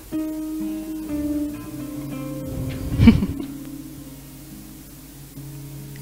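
Acoustic guitar playing soft, sustained chords, with a brief louder sound about three seconds in.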